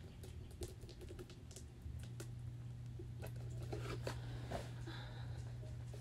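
Faint, irregular light taps and small clicks from a paint-covered glass jar being handled and worked with a brush, over a steady low hum.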